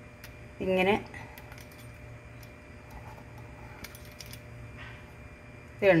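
Faint, scattered light metallic clicks and clinks of a pizza cutter and hands working rolled-out dough on a wooden board, with a short word of speech about a second in.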